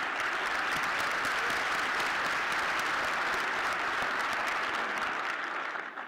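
Audience applauding, a dense steady clapping that dies away near the end.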